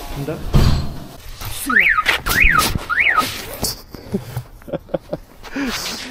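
A low knock, then three short whistle-like notes, each sliding up in pitch and back down.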